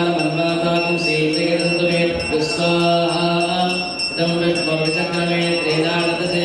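Male voices chanting mantras on a low, nearly level pitch, in long held phrases broken roughly every second.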